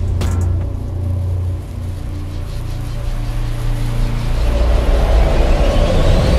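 Cinematic intro sound design: deep, sustained bass rumble under low held tones, with a rising sweep that swells in loudness over the last two seconds, building to a fiery blast.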